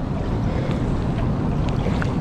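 Steady low rumbling noise of wind buffeting the microphone, mixed with running river water.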